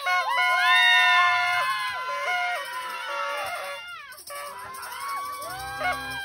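A man singing into a microphone over music, holding long notes that step up and down. The singing is loudest in the first two seconds, dips about four seconds in, and goes on more quietly after that.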